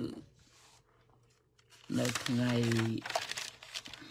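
A man speaks a short phrase, then irregular crinkling and crackling handling noise close to the microphone, like something being crumpled or rustled.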